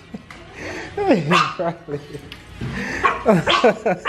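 A small dog yipping and whining excitedly in a string of short cries that fall in pitch, as it greets its owner on being picked up from grooming.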